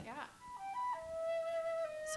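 A flute begins playing about half a second in: two short notes stepping downward, then one long held note.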